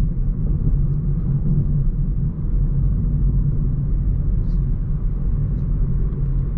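Steady low rumble of road and engine noise inside the cabin of a Hyundai i30 Wagon on the move, even in level with no revving.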